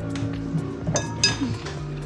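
Background music, with two sharp clinks of kitchen dishes about a second in, each ringing briefly.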